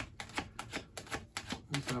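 Tarot deck being shuffled by hand: the cards clack together in a quick run of sharp clicks, about five a second.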